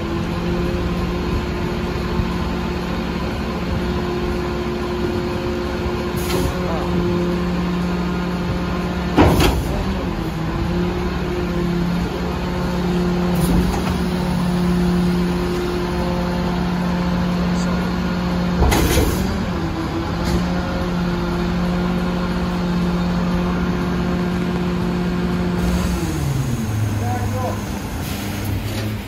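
Volvo garbage truck's diesel engine held at raised revs, a steady hum, driving the Mazzocchia rear-loader's hydraulic packer as it compacts cardboard. Two sharp metal clanks come about nine and nineteen seconds in. Near the end the revs drop back to idle.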